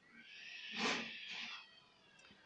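A faint animal cry in the background: one drawn-out call of about a second and a half, swelling to its loudest near the middle and fading away.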